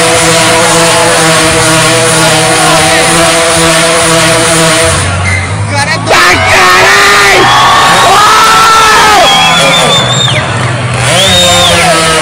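A motorcycle engine held at steady revs for about five seconds, then revved up and down in repeated bursts of about a second each, climbing, holding and dropping, with crowd voices.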